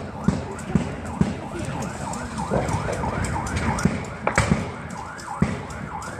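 A vehicle siren in a fast yelp, rising and falling about four times a second, with scattered knocks over it.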